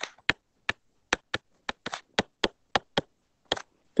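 Stylus tip clicking on a tablet's glass screen during handwriting: a quick, irregular run of sharp clicks, about three or four a second.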